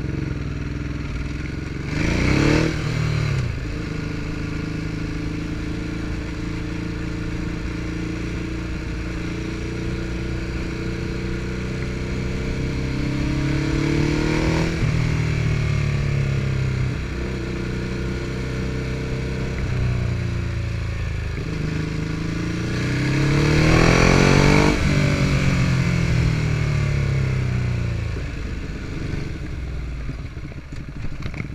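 Ducati Hypermotard's L-twin engine on the road, heard from the rider's chest: a sharp rise in pitch about two seconds in, then steady running. The engine note climbs and drops again near the middle, climbs once more at about three-quarters of the way through, then falls as the bike slows near the end.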